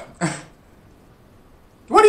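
A man's short wordless vocal sound, a pause of quiet room tone, then a longer closed-mouth "mm"-like hum starting near the end.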